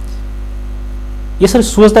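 Steady electrical mains hum on the studio audio line, a low buzz that fills the pause in the talk; a man's voice starts speaking about one and a half seconds in.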